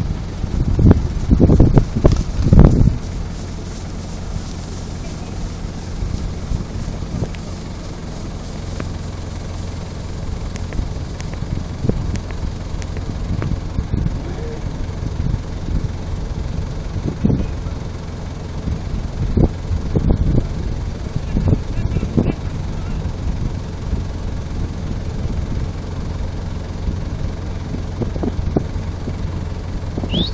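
Wind buffeting the microphone as a steady low rumble, with stronger gusts about a second in and again around twenty seconds in. Faint, indistinct voices sound beneath it.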